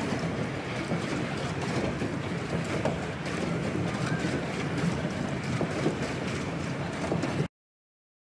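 Steady rushing noise of wind and water from a pedal boat being pedalled across a pond, cutting off suddenly near the end.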